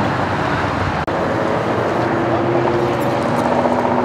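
Steady roar of freeway traffic passing at speed, with an engine's hum rising in the second half.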